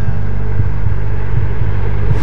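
Loud, steady low rumbling drone: a cinematic sound-design bed with a pulsing bass.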